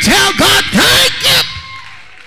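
A man preaching loudly into a handheld microphone in a chanting delivery whose pitch swoops up and down. His voice breaks off about a second and a half in, leaving a faint steady tone.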